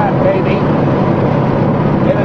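Light aircraft's piston engine and propeller running steadily in flight, heard from inside the cockpit.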